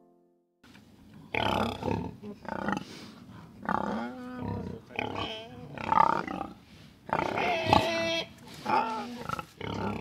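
Hampshire pigs calling in a barn: an irregular run of short grunts and squeals, with a longer, louder squeal about eight seconds in.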